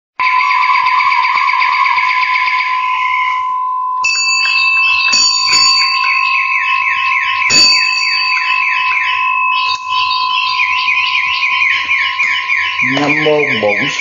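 A steady high-pitched tone runs throughout, with fast, evenly repeating chirps above it, several a second. Near the end a man's voice begins.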